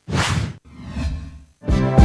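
A whoosh sound effect that starts suddenly, fades over about half a second and is followed by a fainter second swell. Music starts near the end.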